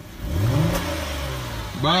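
Car engine revving up briefly, then settling to a steady run.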